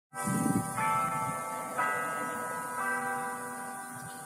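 Church bells struck four times, about a second apart, in several pitches, each stroke ringing on and overlapping the next.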